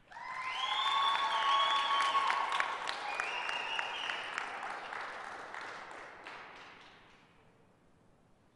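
Audience applauding, with long high cheers over the clapping. The applause swells within the first second and fades away by about seven seconds in.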